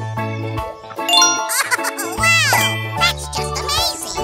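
Background music: chiming notes over a low bass line, with whistle-like pitch glides sweeping up and down.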